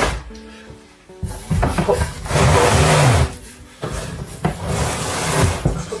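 A heavy cardboard box being slid across a wooden workbench: a loud scraping rush about two seconds in that lasts about a second, with a sharp knock a little past four seconds.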